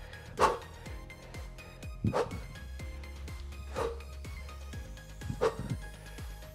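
Background music, with four short, sharp exertion grunts from a man doing skater hops, one with each side-to-side stride, about every second and a half.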